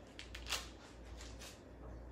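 Butter wrapper paper being handled and peeled: a few short crinkles and clicks, the loudest about half a second in, with one more a second later, over a low steady hum.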